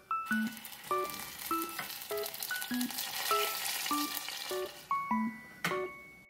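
Sauce sizzling in a stainless saucepan over a gas flame turned up high, a crackling hiss that starts suddenly just after the start and dies away near the end, under background piano music.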